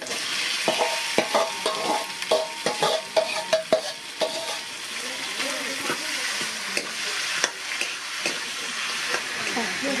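Spiced, onion-laden pieces tipped into hot oil in a metal kadai and sizzling loudly, with a quick run of a steel ladle clinking against the pan in the first four seconds. Steady sizzling follows as the food is stirred.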